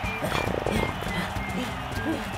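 Cartoon background music with a character's wordless, strained vocal sounds and a run of quick, light footsteps.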